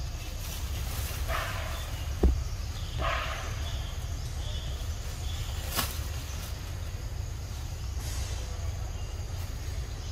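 Macaques climbing through leafy branches: leaves and twigs rustle in two short patches over a steady low rumble, with a sharp click about two seconds in and another near six seconds.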